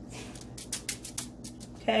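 Metal spoon spreading tomato sauce across a thin pizza crust: a soft scrape, then a run of light clicking scrapes about a second in.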